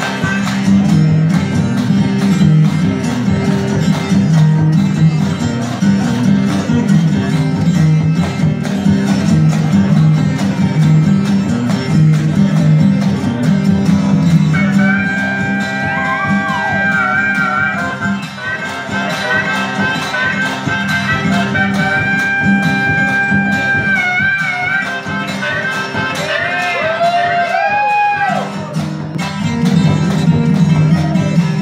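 Live acoustic blues trio: an acoustic guitar strums chords and a washboard is scraped in a steady rhythm. From about halfway in, a harmonica plays long held notes that bend in pitch over them.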